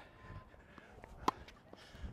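Tennis rally on a hard court: one sharp pop of the tennis ball about a second and a quarter in, over quiet outdoor background.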